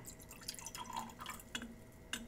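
Liquid poured from a graduated cylinder into a small glass beaker: a faint trickle and scattered drips and splashes, with a brief higher trickling tone about a second in.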